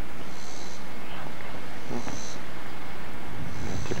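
Steady outdoor background noise picked up by an old camcorder microphone, with a faint high-pitched buzz recurring about every second and a half.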